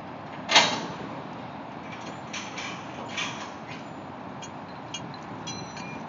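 Metal striking a steel column: one sharp, loud clank about half a second in, followed by lighter metallic clinks and a few short rings.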